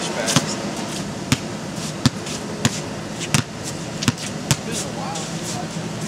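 Basketballs being thrown and bouncing off the inflatable and the ground, a string of sharp knocks at irregular intervals, over the steady rush of the inflatable's electric blower.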